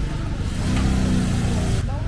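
A motor vehicle engine running close by over a low street rumble, growing louder with a steady low hum for about a second in the middle, then dropping back.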